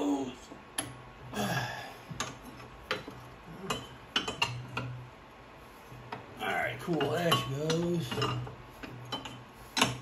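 Steel hand tools clinking and knocking against each other as a wrench is fitted to a clutch removal tool on a small engine's flywheel and worked to loosen the clutch; a scattering of sharp metallic clicks.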